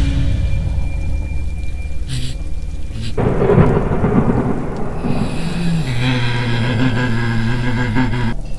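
Thunder rumbling over rain as a horror-film sound effect. A heavier rumble breaks in about three seconds in, and a low held drone builds under it near the end.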